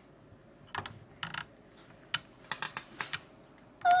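Lego bricks and pieces being handled by hand: a run of light, irregular plastic clicks and taps.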